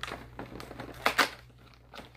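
Cardboard door of an advent calendar being pulled and torn open: a few short crinkling, tearing noises, the loudest two close together about a second in.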